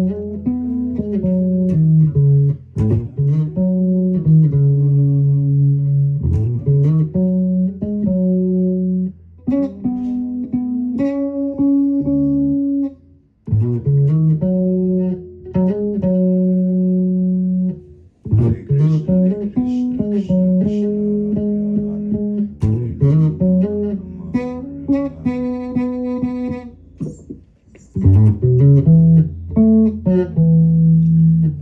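Electric bass guitar playing a slow melody of held notes that often slide up into their pitch, with a few short breaks between phrases.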